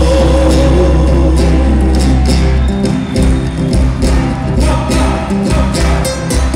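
Live Argentine folk music: a sung song over a band with a heavy bass and a regular beat, playing for a handkerchief dance.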